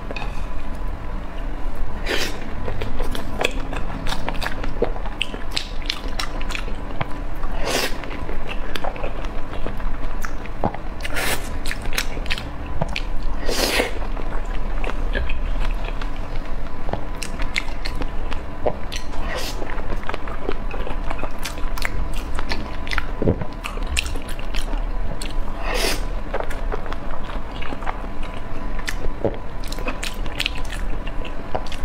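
Close-miked chewing and biting, with wet mouth smacks and clicks throughout, as salmon rolls are eaten. A faint steady tone runs underneath.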